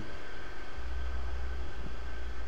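Steady low background hum with an even hiss, holding level throughout with no distinct events.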